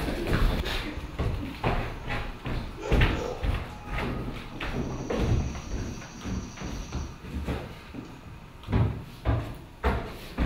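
Irregular thumps and knocks on a theatre stage, with a cluster of heavier thumps near the end. A faint thin high tone sounds for about two seconds in the middle.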